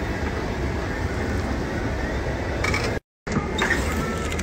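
Steady airliner cabin noise: a constant low rumble and air hiss from the aircraft's engines and air system, cut off for a split second by a sudden gap of silence about three seconds in.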